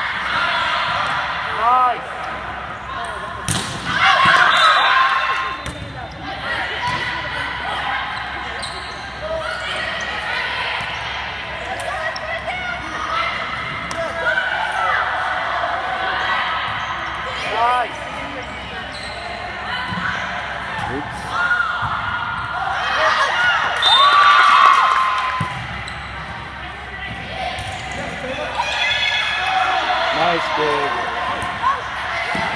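Indoor volleyball play: sneakers squeaking on the sport court in short chirps and the ball being struck, under players' and spectators' calls and shouts, with louder bursts of shouting about four seconds in and again in the second half.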